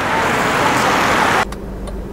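Street traffic noise, a steady wash from passing scooters and cars, cutting off abruptly about one and a half seconds in to a quieter, steady low hum inside a car's cabin with a few faint clicks.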